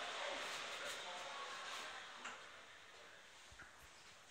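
Inside a Mitsubishi ELEMOTION passenger elevator car: a soft sound from the car fades away over the first two seconds into quiet, and small clicks come a little past two seconds and again near the end.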